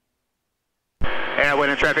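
Complete silence for about a second, then a pilot's voice over the aircraft radio intercom starts abruptly, thin and telephone-like, making a traffic call to turn base.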